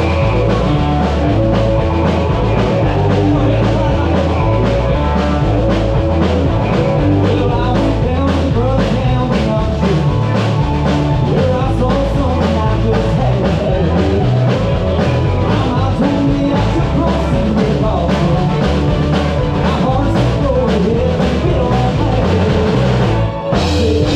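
A live country band playing a 90s country song: fiddle, electric and acoustic guitars, bass guitar and drum kit over a steady beat. The band drops out briefly just before the end.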